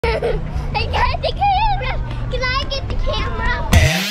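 Children's voices calling and squealing in high, wavering pitches over a steady low rumble. Near the end a loud rising electronic tone starts, the beginning of the intro music.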